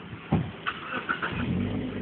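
A car close by: a sharp thump about a third of a second in, then its engine running and rising slightly in pitch near the end.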